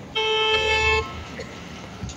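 A vehicle horn sounding once, a steady single-pitched honk lasting just under a second, starting shortly after the beginning.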